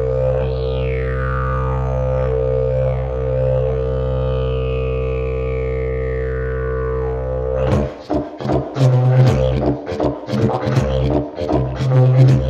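Elm evoludidg, a three-key didgeridoo with a zebrano bell, played as a steady drone whose overtones sweep up and down. About eight seconds in, the playing breaks into a fast rhythm of sharp accented pulses.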